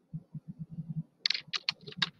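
Typing on a computer keyboard: a quick run of soft keystrokes, then several sharper, louder key clicks in the second half.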